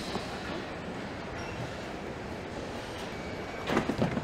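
Steady background noise of a car assembly hall, with a few sharp knocks near the end.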